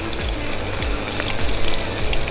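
Chicken pieces coated in potato starch deep-frying in hot oil: a steady sizzle with many small scattered crackles. Background music plays along with it.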